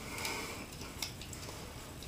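Faint rubbing of a shop rag as a hydraulic roller lifter part is wiped down by hand, with one light tick about a second in.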